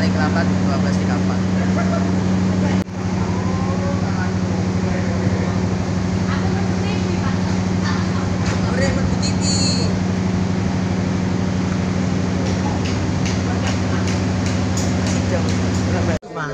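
Steady low engine hum of a stopped diesel train idling, with voices of people talking over it. The hum is briefly interrupted by a cut about three seconds in.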